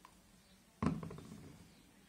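A single sharp knock on the worktable, ringing briefly and dying away within about half a second.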